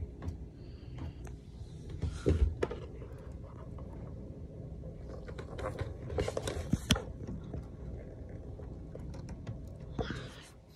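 Handling noise around a plastic insect box: scattered light clicks and knocks, with a heavier knock about two and a half seconds in and a cluster of sharp clicks around six to seven seconds.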